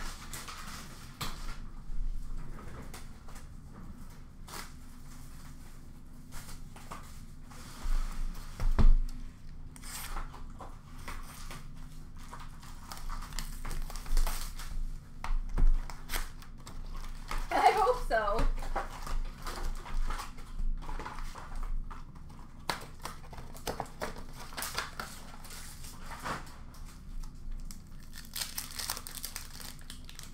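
Foil packs of Upper Deck hockey cards being torn open and their wrappers crinkled, with cards and packs handled on a counter in irregular rustles and clicks. A single knock about nine seconds in.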